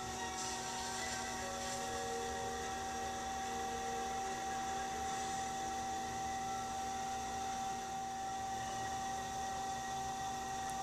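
Electric pottery wheel running at a steady speed, its motor giving a constant hum with a steady mid-pitched whine while a clay cup is thrown on it.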